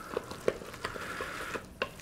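Wooden spoon stirring thick risotto in an Instant Pot's stainless steel inner pot: the rice squishes softly and the spoon knocks against the pot wall about three times a second.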